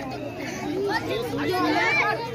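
Several children and onlookers talking and calling out over one another, with a steady low hum underneath. One voice rises to a shout near the end.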